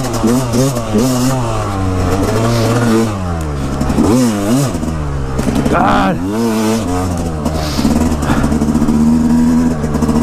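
Yamaha dirt bike engine being ridden hard, revving up and down with the throttle and gear changes, its pitch rising and falling several times, with big swoops about four and six seconds in.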